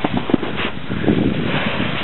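Wind buffeting the camera microphone, a steady rough rushing with irregular flutters and bumps.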